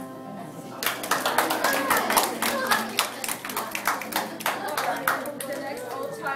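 A small audience clapping, starting about a second in and thinning out near the end, with voices mixed in.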